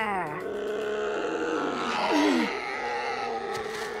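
A cartoon dinosaur's short groan, falling in pitch about two seconds in, over sustained background music.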